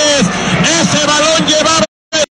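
Loud, continuous voices, not clear enough to make out words, that cut off abruptly near the end.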